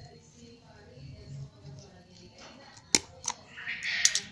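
A handheld stapler snapping twice in quick succession, two sharp clicks about a third of a second apart near the end, as staples are driven through a coiled young coconut-leaf (janur) wrapper to hold it shut.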